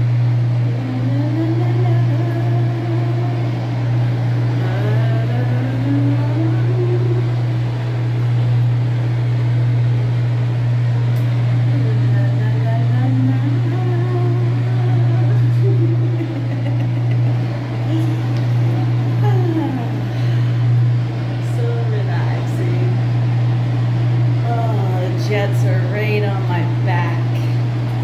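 Bathtub faucet running into a filling whirlpool tub over a loud, steady low hum, with a person's voice heard at times.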